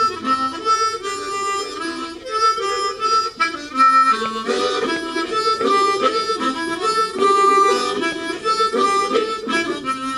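Solo harmonica playing a melody, with several notes often sounding together and the tune moving from note to note every half second or so.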